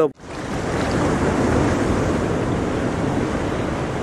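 Steady rushing water noise, like ocean surf or an underwater ambience, that swells in just after a cut and then holds evenly.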